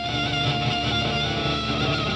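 Electric guitar lead playing long held notes with a wavering vibrato, over bass guitar and drums in a rock band playing live.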